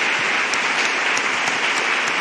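Many people applauding, a steady clapping that holds through the whole stretch.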